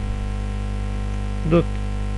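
A steady electrical mains hum, with one short spoken word near the end.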